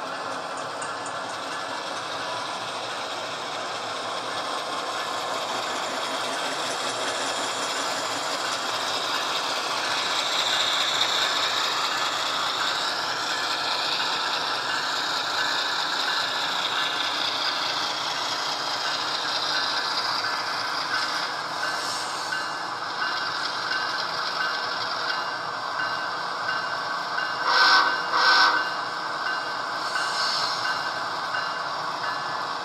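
HO scale Athearn Genesis GE ES44DC model locomotives running on track: a steady mechanical whir of motors, gears and wheels, with the DCC sound decoder's diesel engine sound from small onboard speakers. It grows louder about ten seconds in as the units pass close. Near the end come two short, loud tonal blasts.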